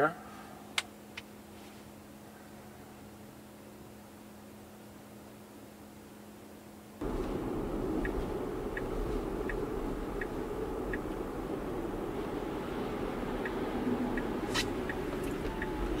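Cabin sound of a Tesla on the move: a low steady hum, then about seven seconds in it jumps abruptly to louder tyre and road noise. Faint regular ticks run through the noisier part.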